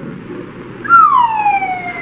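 A sharp click, then a long falling whistle that slides smoothly down in pitch, a comic sound effect.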